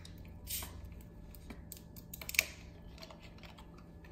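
Plastic water bottle being handled: a few light, irregular clicks and crackles of plastic, with the sharpest one about two and a half seconds in.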